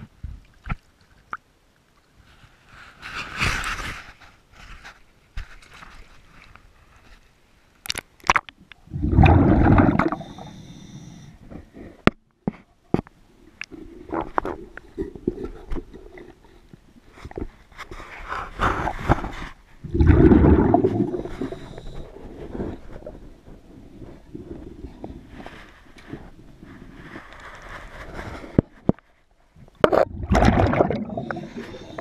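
Diver breathing through a regulator underwater: a hissing inhalation followed by a loud, low, bubbling exhalation, heard twice, with scattered sharp clicks and knocks between breaths.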